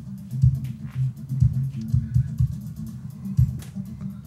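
Energy AS90 powered subwoofer playing music, with only the deep bass coming through: a low bass line with kick-drum beats roughly once a second. The sign that its repaired amplifier is working.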